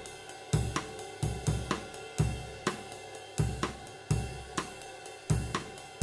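Zildjian 21-inch A Sweet Ride cymbal in Brilliant finish, played with a stick in a steady time pattern, its wash ringing between strokes. Under it, a drum-kit groove of kick drum about once a second and snare strokes.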